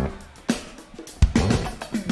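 Live funk band in a stop-time break: the full groove drops out, leaving a few isolated drum hits and short sliding bass notes in the second half.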